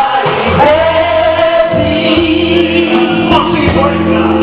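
Live rock band playing with electric guitar, bass and drums, vocals holding long sustained notes over the band.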